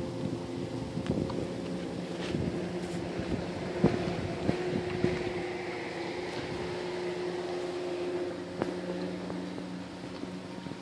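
Motorboat engine running steadily at a distance, a low even hum, with a few sharp clicks near the middle.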